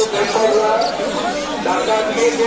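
People talking nearby, overlapping voices with no clear words, and a few faint high chirps from caged birds.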